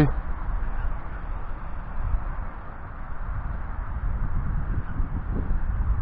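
Wind buffeting the microphone: a steady low rumble with a hiss above it.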